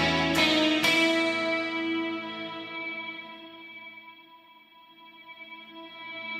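A rock song ending: guitar strikes a last chord about a second in that rings out and fades away over several seconds, then music swells up again near the end.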